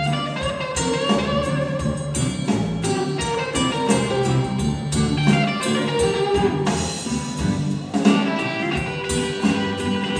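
Live blues-rock band playing, with a Stratocaster-style electric guitar taking a solo over bass and a steady drum beat.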